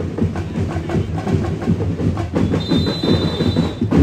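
Dinagyang tribe drum ensemble playing a fast, driving rhythm of rapid drum beats. A steady high whistle sounds for about a second, starting a little past halfway.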